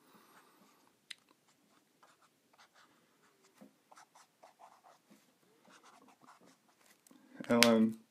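Faint, irregular scratching and rubbing of a Copic Sketch marker's brush tip across a paper sticky note as brown is laid in, with a small sharp click about a second in. A short burst of voice comes near the end.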